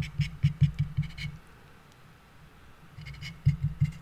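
Rapid clicks and soft knocks in two bursts, about a second each, with a quiet gap of about two seconds between.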